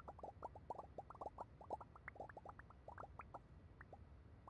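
Faint, quick patter of many short rising blips, about ten a second and irregularly spaced: the pop sound effects of AltspaceVR's clapping-hand emoji reactions, sent as virtual applause.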